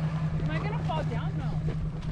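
Off-road vehicle engine idling steadily, with faint voices over it.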